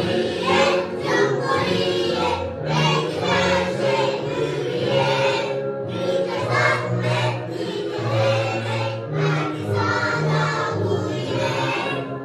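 A group of young children singing a song together over an instrumental accompaniment.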